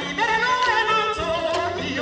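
A singer's voice leading a sung line with wavering, gliding pitch, over the drums of a West African djembe and dundun percussion ensemble.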